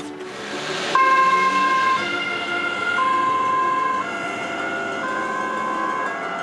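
Ambulance two-tone siren, alternating between a lower and a higher pitch about once a second, starting about a second in after a rising rush of noise.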